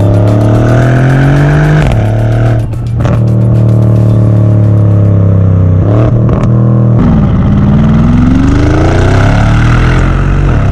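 Twin-turbo V8 exhaust of a Brabus-modified Mercedes-AMG GLE 63, heard right at the tailpipes. It climbs in pitch under acceleration and drops at an upshift about two seconds in. It then runs on and falls slowly as the SUV brakes, gives a few sharp pops on the overrun around six seconds, and rises again under hard acceleration near the end.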